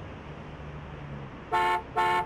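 Street traffic rumbling steadily, then two short car-horn honks about half a second apart near the end.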